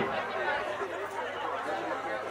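Low background chatter of several people talking, quieter than the amplified speaker whose phrases fall on either side.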